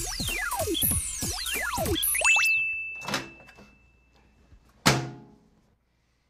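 Sci-fi sound effects for a homemade 3D printer at work: a string of falling electronic sweeps, then a held high beep, then a single sharp thunk near the end as the printed item arrives.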